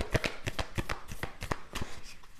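A deck of tarot cards being shuffled by hand: a quick run of soft card clicks, about seven or eight a second.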